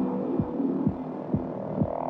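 Psytechno track in a sparse intro: a kick drum hitting about twice a second, each hit dropping in pitch, under a steady droning synth pad, with no hi-hats or bassline yet.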